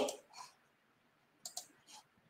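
Mostly quiet, with a few faint, short clicks, two of them in quick succession about one and a half seconds in.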